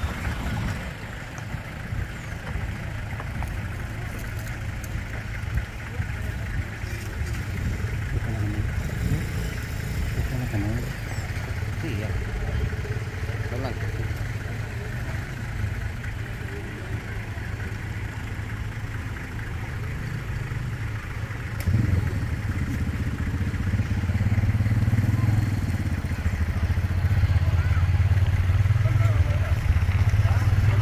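Motor vehicle engines running at low speed in a slow convoy, with people's voices in the background; the engine sound gets louder about two-thirds of the way through.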